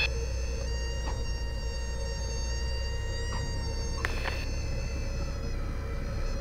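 Cessna 172's stall warning horn sounding a steady high-pitched whine as the wing nears the stall with the nose held up in the flare, over the low steady hum of the engine at idle. A few faint knocks come through, one about four seconds in.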